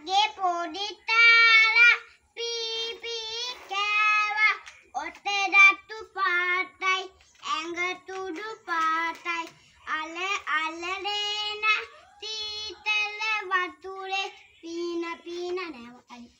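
A young boy singing a song solo with no accompaniment, in phrases with long held notes and short breaths between them.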